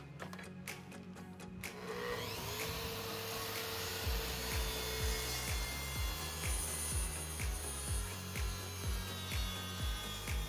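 Makita plunge track saw spinning up about two seconds in and then cutting along the edge of a walnut board to true it straight, with its dust extraction running. Background music with a steady beat plays over it.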